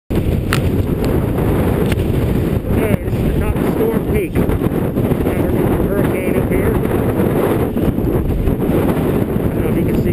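Strong wind blowing across the microphone: a loud, steady rush of low, rumbling noise that doesn't let up, in a mountain white-out storm.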